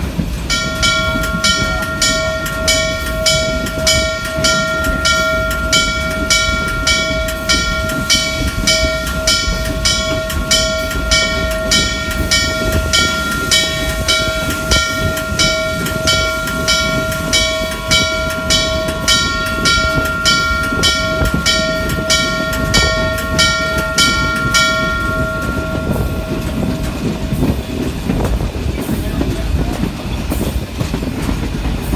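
Steam whistle of Norfolk & Western J-class locomotive #611, a steady chord held for about 25 seconds and then cut off. A regular rhythmic beat of the running locomotive carries on underneath it.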